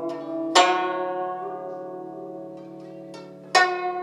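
Guzheng music: a slow melody of plucked notes. One note is plucked about half a second in and rings out, dying away slowly, before the next notes come near the end.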